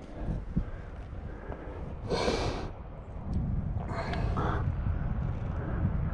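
A rock climber's breathing: a short, sharp breath about two seconds in and a weaker one around four seconds, over a low rumble.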